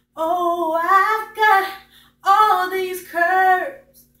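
A young woman's voice singing a cappella: two held, wavering sung phrases with a short breath between them about two seconds in.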